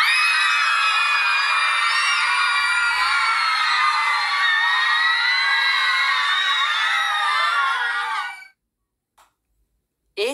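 Recording of a crowd of people screaming together on an amusement-park ride, many voices held in one long, continuous scream for about eight and a half seconds before it fades out quickly.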